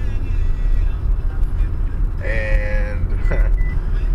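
Steady low road rumble inside a moving car's cabin, with a short drawn-out vocal sound a little past halfway.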